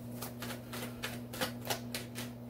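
A series of light, sharp clicks and ticks, about three a second and unevenly spaced, over a steady low hum.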